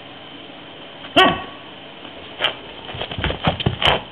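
A husky gives one loud bark, falling in pitch, about a second in, followed near the end by a quick run of short, sharp sounds.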